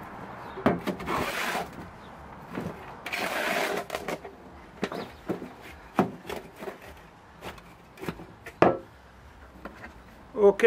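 Metal shovel mixing garden soil with fertiliser in a plastic wheelbarrow: scraping, swishing scoops about one and three seconds in, and scattered knocks of the blade against the barrow, the sharpest near the end.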